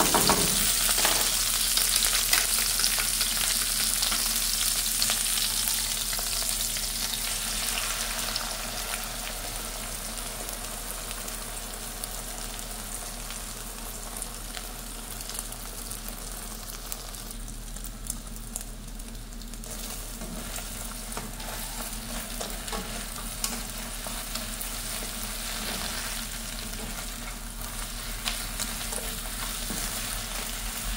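Tortilla strips and peppers sizzling in oil in a nonstick wok, stirred and scraped with a slotted spatula, with small clicks from the strokes. The sizzle is loudest at first and gradually settles lower as egg is scrambled in among the strips.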